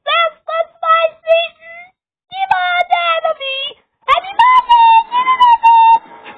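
A high-pitched voice singing a sing-song tune in short notes, in three phrases with brief pauses between them; the last phrase rises to higher, longer held notes.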